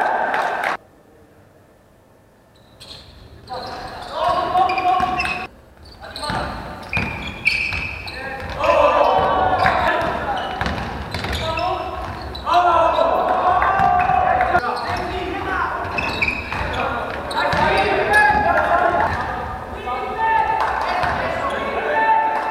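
Live sound of a basketball game in a reverberant sports hall: players and coaches shouting, with a basketball bouncing on the wooden court. The sound drops out almost completely for about two seconds near the start, and again briefly around six seconds in.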